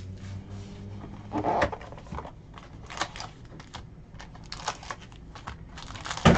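Cardboard trading-card hobby box being opened and foil card packs handled: scattered light clicks and crinkles, with a louder rustle about a second and a half in.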